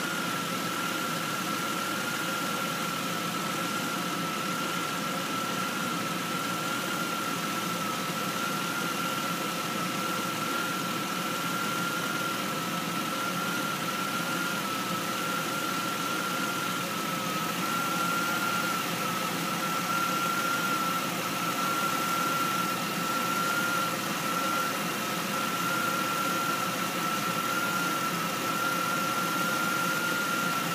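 2005 Chevy Uplander's 3.5-litre V6 idling steadily, with a steady high-pitched whine over the engine noise.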